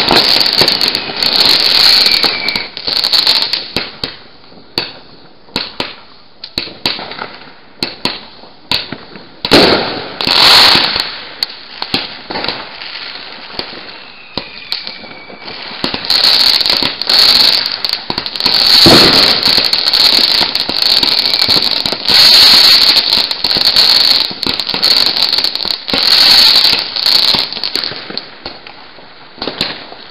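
Consumer fireworks and firecrackers going off close by, a rapid uneven mix of crackling and sharp bangs. The barrage thins to scattered pops about four seconds in and again around 12 to 15 seconds in. It turns loud and dense for a moment around 10 seconds in and again for much of the second half.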